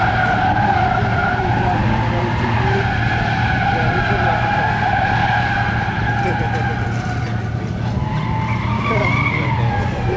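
Nissan Z31 300ZX drifting: its tyres squeal in one long steady howl over the running engine, the squeal's pitch shifting higher near the end.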